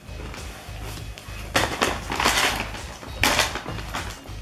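A crunchy fried snack being chewed close to the microphone, in two loud crunching spells, one about a second and a half in and a shorter one near the end, over steady background music.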